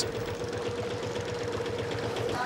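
Small boat engine running steadily, with a rapid, even chatter and a steady hum.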